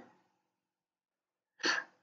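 Near silence, broken near the end by one short, sharp intake of breath from a man about to speak.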